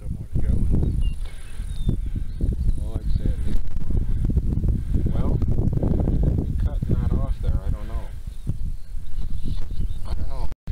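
Wind buffeting the camera's microphone: a loud, uneven low rumble.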